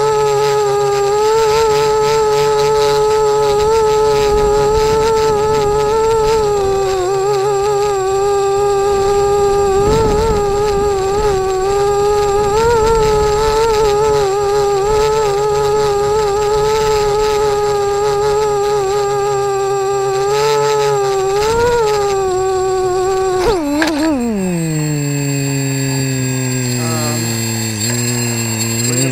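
Multirotor drone's electric motors and propellers buzzing at a steady high pitch that wavers slightly as it flies. In the last few seconds the pitch drops steeply and keeps sinking as the drone sets down and the motors spin down.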